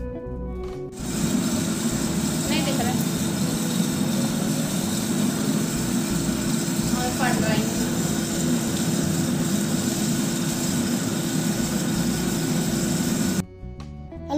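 Intro music for about the first second, then an electric curd-churning machine's motor running steadily, churning curd to bring out butter for ghee. It cuts off suddenly just before the end.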